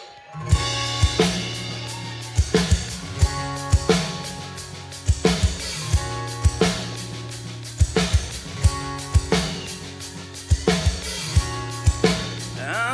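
Live rock band starting a song: drum kit, electric and acoustic guitars and bass come in together about half a second in and play the instrumental intro, with a steady drum beat under sustained guitar chords.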